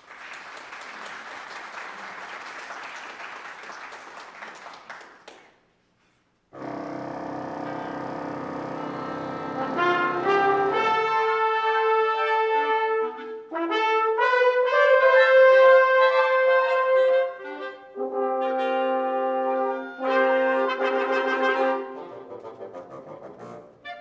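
About five seconds of applause that stops, a moment's silence, then a wind band begins with low held brass chords. About ten seconds in it breaks into a louder, moving tune over sustained harmony.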